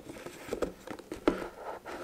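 A leather pouch being handled while its antler toggle is pushed through the leather loop: soft rubbing and scraping of leather, with a few light taps.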